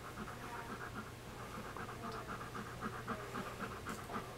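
Adult German Shepherd panting quietly in a quick, even rhythm.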